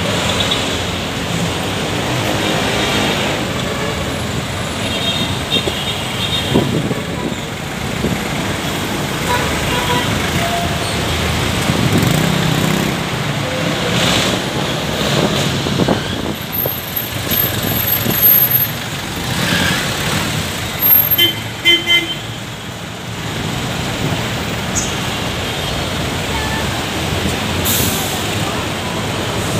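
Busy city street traffic: a steady wash of cars, vans, motorcycles and buses passing close by, with a few short horn toots.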